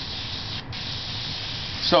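Airbrush spraying paint with a steady hiss that stops briefly about two thirds of a second in, then carries on.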